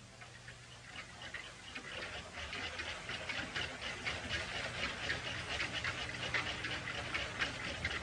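Many clocks ticking at once: a dense, rapid clatter of overlapping ticks that grows louder over the first few seconds.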